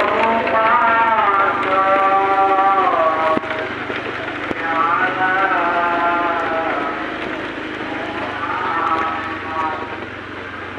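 A voice singing or chanting in long, wavering held notes, in three phrases with short breaks between, over the steady low hum of a Honda scooter ridden slowly.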